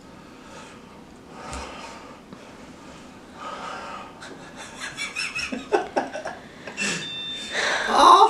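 Men breathing hard through the mouth and nose in uneven gasps and sharp exhales, coming quicker and louder over the last few seconds: a reaction to the burn of a chili lollipop made with habanero, ghost and Carolina Reaper peppers.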